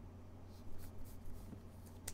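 Light scratchy rubbing and sliding of glossy Topps Chrome baseball cards and clear plastic card holders in gloved hands, in a few short bursts.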